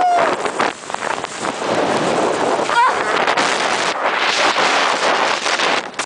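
Wind rushing over the microphone and skis running over snow during a fast downhill ski run, a steady loud rush with many small scrapes in it. A short shout cuts in about three seconds in.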